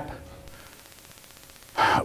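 A short pause in a man's speech, then near the end a quick, audible in-breath as he draws air to go on talking.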